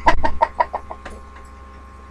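A young girl laughing: a quick run of short, high-pitched ha-ha pulses, about seven a second, that die away within about a second.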